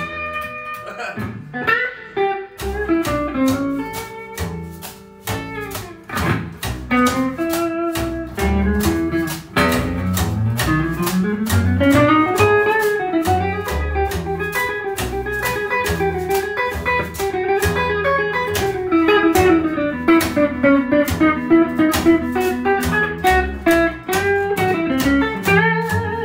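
Electric guitar and upright double bass playing blues-style music together. A wire brush struck on a brush pad mounted on the bass's body keeps a steady percussive beat.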